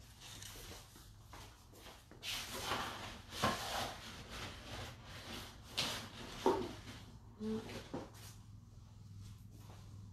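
Quiet scattered rubbing and rustling with a few light knocks: a paintbrush being wiped clean of something sticky and painting tools handled on a wooden worktable.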